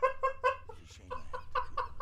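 A person laughing in a rapid run of short, clipped bursts, about five a second, loudest at first and then fainter.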